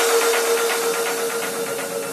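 Electronic dance music at a breakdown: the beat drops out, leaving one held synth note and a hiss of noise with a fast pulse that slowly fades.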